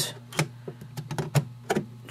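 An iPod touch being pushed and seated into the slot of a plastic dual charging dock: a string of sharp clicks and taps, the strongest about half a second and a second and a half in.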